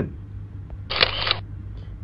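Camera-shutter sound effect from a slide transition: a click and a short burst of hiss, just under half a second long, about a second in.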